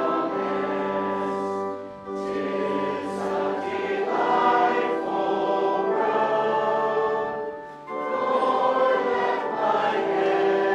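Congregation singing a hymn together, with short breaks between lines about two seconds in and again just before the eight-second mark.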